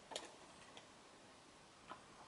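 Near silence with a few light clicks from hand-held props being handled: the loudest just after the start, a faint one in the middle and another just before the end. No music is on the track.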